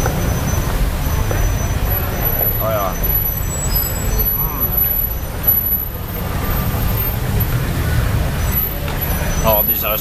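Steady city street traffic rumble, with a few faint voices of people nearby.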